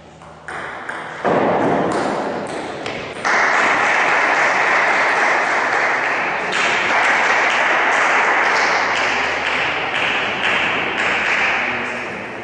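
Table tennis ball clicking off bats and table in a large hall, a sharp knock every half second or so, under a loud steady rushing noise that swells in steps over the first three seconds.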